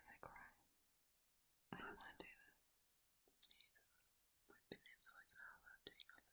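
Faint whispering in four or five short bursts, with a few light clicks between them.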